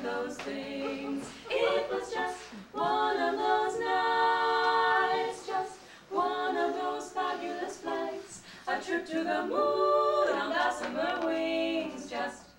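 Three women's voices singing an original a cappella score in harmony, in phrases with short breaks, holding a long chord about three to five seconds in.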